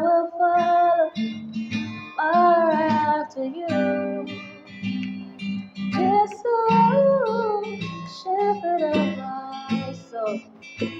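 A woman singing a slow melody in held, gliding notes over a strummed acoustic guitar.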